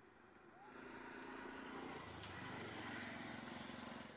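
Faint motor-vehicle engine running steadily, coming in about half a second in.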